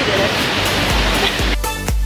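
A waterfall rushing as a loud, steady roar. About one and a half seconds in, background music with a steady beat takes over.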